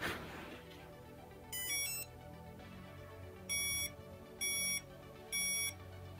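Hover-1 Rebel hoverboard's built-in beeper playing a quick rising run of tones, then three even beeps about a second apart: the three beeps signal that its calibration is complete.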